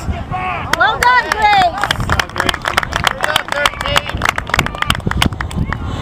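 High-pitched shouting voices with no clear words, then a run of sharp, irregular clicks from about two seconds in.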